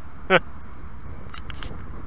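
A man's short vocal exclamation about a third of a second in, over a steady low rumble of wind on the microphone, with a few faint clicks near the end.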